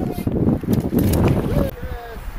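Wind buffeting the microphone, a loud, uneven low rumble. A brief falling voice is heard near the end.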